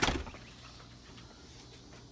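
A single sharp knock at the very start, dying away within a fraction of a second, then faint steady room noise.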